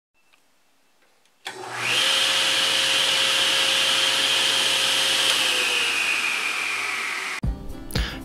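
A motor-driven machine running steadily with a loud whine and rush, starting about a second and a half in; its pitch sags slightly near the end before it cuts off abruptly.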